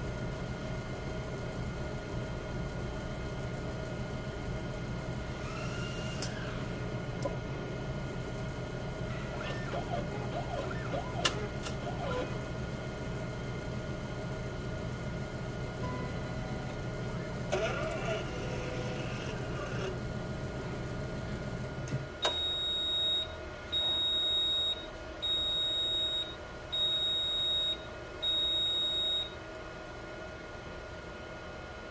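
Siemens Sysmex CS-2500 coagulation analyzer running: a steady hum from its motors and fans, with a few clicks and whirs from its moving sampling arm. About 22 seconds in the low hum drops away, and the analyzer gives five high beeps, each about a second long, roughly one every second and a half.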